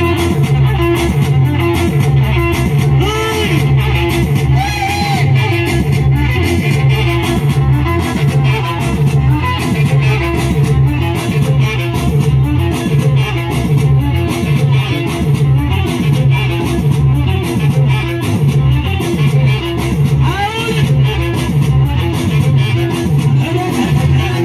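Live Tigrigna band music over a PA: an amplified plucked-string riff repeating over bass and a steady beat.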